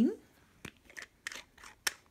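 Several short, sharp clicks and small knocks from handling a thick-based glass ink bottle and its cap, with the loudest click near the end.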